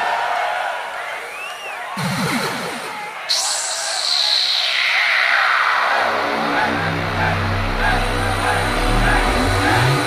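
A large open-air festival crowd cheers and whistles. About three seconds in, the band's intro music starts suddenly with a high sound sliding down in pitch, and low sustained bass notes come in about six seconds in.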